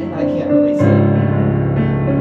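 Digital piano playing a melody over held chords and a bass line, with a new low bass note struck just under a second in.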